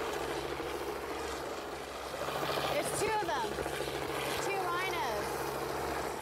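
Open safari vehicle's engine running steadily as it drives along a dirt track, with brief voices calling out twice in the middle.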